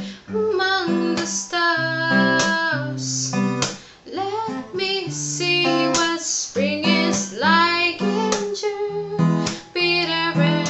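A woman singing a slow love song to her own acoustic guitar accompaniment, with a brief break between phrases about four seconds in.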